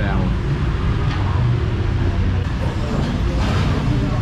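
Busy street-eatery ambience: a steady low hum of street traffic under background chatter of diners.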